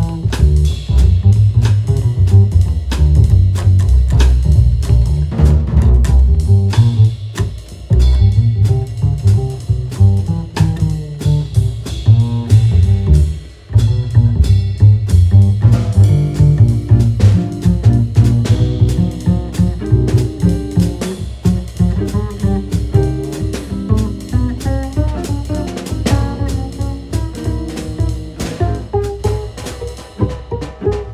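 Live small-group jazz: a double bass carries a prominent line of low notes, with archtop electric guitar and a drum kit's cymbals and drums behind it. The music dips briefly about halfway through, then carries on.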